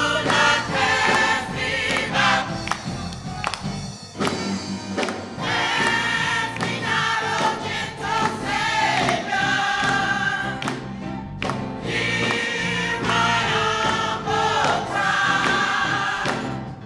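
Church mass choir singing a gospel song together, with musical accompaniment.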